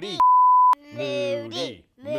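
A loud, steady, single-pitched electronic bleep lasting about half a second, starting and stopping abruptly, edited over a short looping vocal phrase that repeats identically about every second.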